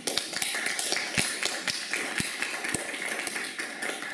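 Audience applauding, a dense patter of many hand claps.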